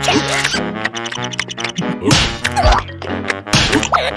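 Cartoon slapstick fight sound effects: whacks and thuds about halfway through, mixed with short, squeaky, gliding cries from the cartoon characters, over playful background music.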